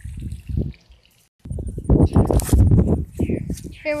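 Wind buffeting the phone's microphone in a loud, uneven low rumble, broken by a brief drop to silence about a second in.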